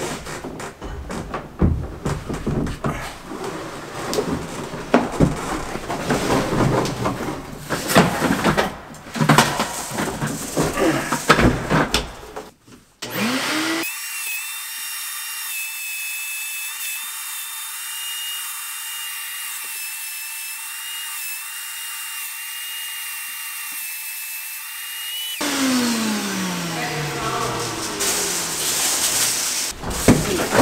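A Shop-Vac wet/dry vacuum sucks leftover wheat seed out of an air seeder tank, with irregular rattling and clattering of seed and hose. About thirteen seconds in the motor spins up to a steady high whine. About twelve seconds later it winds down, and the clatter returns near the end.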